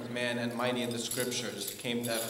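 Male chanting of a Coptic liturgical hymn in long held notes, with the small bells of a swung censer jingling over it.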